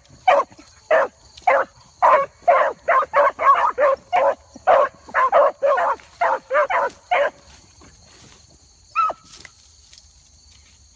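Dogs barking in quick succession, about three barks a second, as they chase a rabbit through brush. The barking stops after about seven seconds, and one more bark comes near the end.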